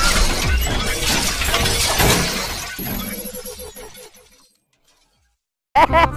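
Intro sound effect: a dense burst of crackling noise with many sharp clicks that dies away over about four seconds, then a moment of silence before a voice comes in at the very end.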